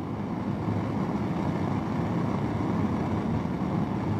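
Bunsen burner's blue gas flame burning with a steady low rush.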